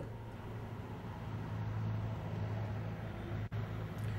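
Steady outdoor street background noise with a low hum, heard over a live broadcast link while the line is open and nobody speaks. The sound cuts out briefly about three and a half seconds in.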